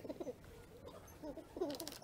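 A bird cooing in several short, low calls; a faint high tinkle near the end.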